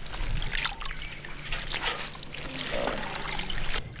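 Water splashing, trickling and dripping as hands swish blanched tteumbugi seaweed (a brown seaweed) around a basin of cold rinse water and lift it out, dripping, into a basket. The sound comes as irregular small splashes.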